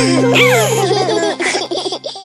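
Cartoon children's voices laughing and giggling over a held low music note.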